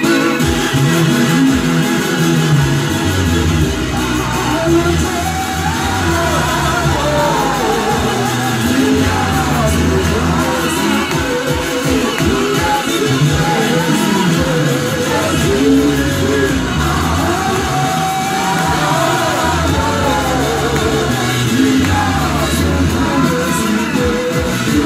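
Live itende (tent-style) gospel worship song: a lead singer and backing vocalists singing into microphones over loud amplified backing music with a heavy bass line.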